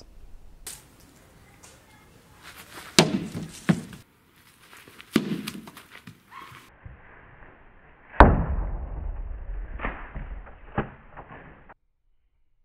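A series of sharp knocks of thrown balls striking a propped-up tempered glass panel, the loudest about eight seconds in with a heavy low thud; the glass holds without shattering.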